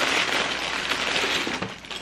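White wrapping rustling and crinkling as a new glass is unwrapped by hand.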